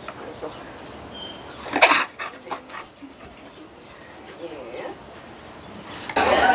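African wild dog giving short, high whimpering calls, with a louder sharp sound about two seconds in and another just before three seconds.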